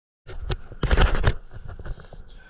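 Rumbling, rustling noise on the microphone in a few short bursts, loudest about a second in.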